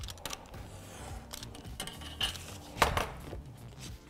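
Paper and cardstock being handled on a cutting mat alongside a ruler: scattered light clicks and rustles, with one sharper knock nearly three seconds in.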